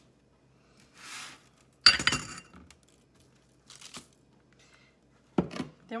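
A ribbed drinking glass set down with a sharp clink about two seconds in, ringing briefly. Soft rustles come before it and a lighter tap follows.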